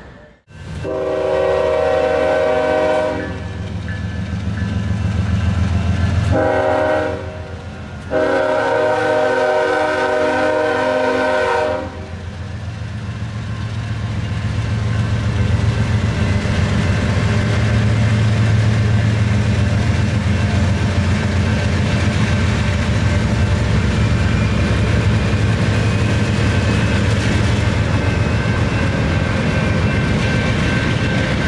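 Norfolk Southern diesel freight locomotive horn sounding for a road grade crossing: a long blast, a short one, then a final long blast that ends about twelve seconds in. After that the locomotives and freight cars rumble and clatter steadily past.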